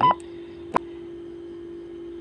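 Motorola GP2000 handheld radio giving a short electronic beep as its PTT key is pressed in programming mode, confirming that the frequency has been stored to memory channel 01. A single sharp click follows a little under a second later, over a steady low hum.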